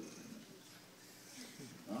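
A pause in a man's spoken introduction: quiet hall room tone, with a faint voiced murmur about a second and a half in, and his speech resumes at the very end.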